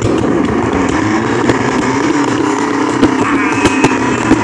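Box with a toddler sitting in it being pushed or dragged across the floor: a steady, loud scraping rumble with many small knocks, picked up close by a device riding in the box.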